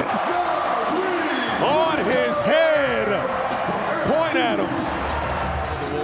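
NBA game arena sound right after a dunk: excited voices shout over crowd noise, and a basketball bounces on the court.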